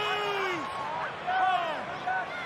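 A man's commentary voice speaking in drawn-out words over the steady murmur of a stadium crowd.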